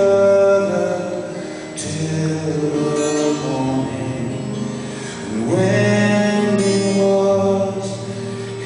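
Live soft-rock band playing: acoustic guitar under long, held, wordless sung notes that slide up into each new chord, with a sharp hit about two seconds in and another near the end.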